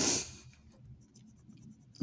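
Coin scraping the latex coating off a scratch-off lottery ticket: a short loud burst of noise right at the start, then fainter, irregular scratching.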